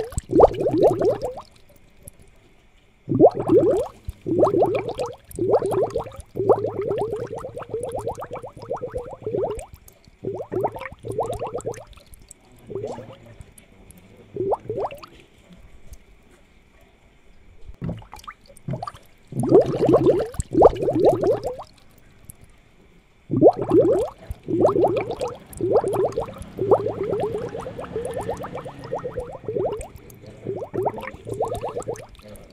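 Aquarium aeration bubbling: water gurgling and churning in irregular bursts of a second or two, each made of rapid bubble pops, with short lulls between them. A faint steady high whine runs underneath.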